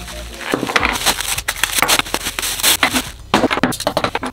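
Plastic packaging rustling and crinkling as a microphone desk arm is unwrapped, with sharp clicks and clatters of the kit's parts being handled and set down on a wooden desk, busiest near the end.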